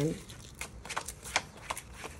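A deck of tarot cards being shuffled and gathered by hand on a tabletop: a run of irregular light snaps and slides of card against card.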